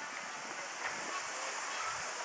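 Steady outdoor street ambience: an even hiss of background noise with no distinct events.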